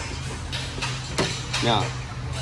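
A steady low hum, with a few faint handling ticks and one sharp click about a second in as gloved hands work a hydraulic hose fitting.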